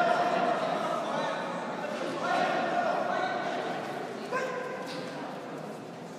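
Loud, drawn-out human shouts, three in a row, echoing in a large sports hall while a Nippon Kempo bout is fought.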